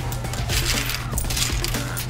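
Coins clinking in a cash register drawer as a cashier picks out small change.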